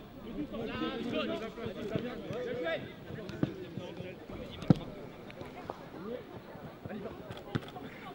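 Distant shouts and calls of football players on the pitch, with a sharp thud of a football being kicked about four and a half seconds in, and a smaller one just before it.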